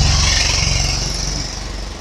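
An engine running steadily at low revs, with a steady hiss above it, easing off slightly toward the end.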